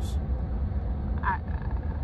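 Steady low rumble of road and engine noise inside a car cruising on a motorway, with a brief vocal sound a little past the middle.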